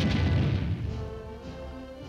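Rumble of artillery shell bursts from a multi-battery 105 mm howitzer fire mission, dying away over the first second, under orchestral film music that carries on with quieter held notes.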